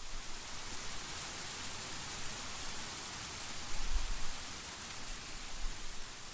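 Steady, even hiss of white noise with no tones or beat in it.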